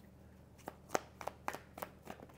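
Tarot cards being shuffled by hand: quiet, with a handful of short, separate card clicks, the sharpest about a second in.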